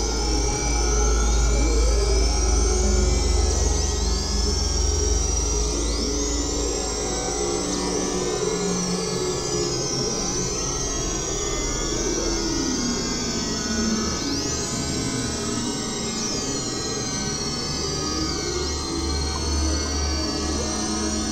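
Experimental synthesizer drone music from a Novation Supernova II and Korg microKORG XL: a deep low drone under steady mid tones, with high pitch sweeps swooping up and down throughout. The low drone is strongest in the first few seconds.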